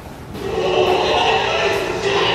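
Giant panda's breeding-season bleating call, one long call starting about half a second in: a male courting a female in estrus.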